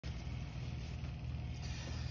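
A steady low hum with a faint hiss behind it, unchanging, with no distinct events.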